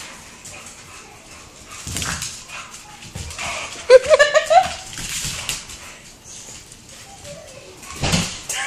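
A pug scrambling across a hardwood floor after a laser dot, with light clicks throughout and a thump about two seconds in. About three and a half seconds in comes a loud, high, wavering whimper-like cry lasting about a second.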